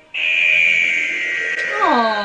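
A loud, high-pitched electronic tone comes in suddenly and is held, sinking slightly in pitch. A woman's voice starts near the end.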